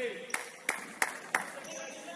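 Four sharp, evenly spaced impacts, about three a second, ringing in a large indoor sports hall, over the hall's background of a futsal game.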